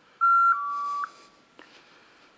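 A loud electronic beep about a second long in two steady tones, the second a step lower, followed by a single faint click.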